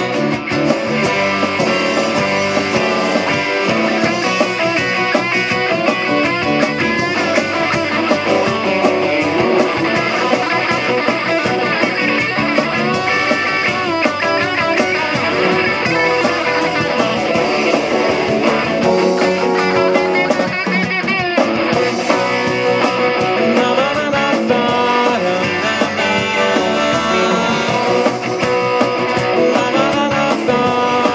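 Live rock band playing an instrumental passage with no singing: guitars over a drum kit.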